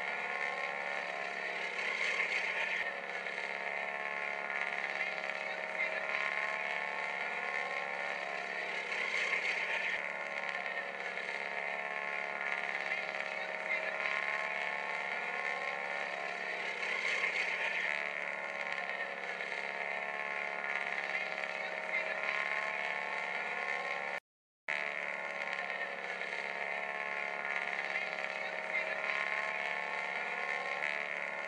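Radial engines of Boeing Stearman biplanes droning steadily overhead, their pitch rising and falling slowly as the aircraft pass. The sound cuts out briefly about 24 seconds in.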